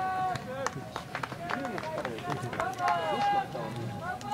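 Several voices shouting across a football pitch during play, with long drawn-out calls near the start and again about three seconds in, and a few sharp knocks between them.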